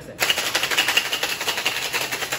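Ice rattling hard and fast inside a metal cocktail shaker, starting a moment in: a short, light shake that is just enough to mix the drink.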